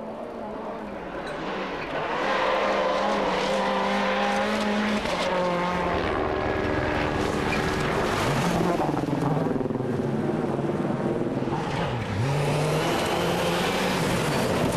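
Seat Cordoba WRC rally car's turbocharged four-cylinder engine at full throttle, passing close by on gravel. It grows loud about two seconds in, holds one high note for a few seconds, then drops and climbs in pitch several times.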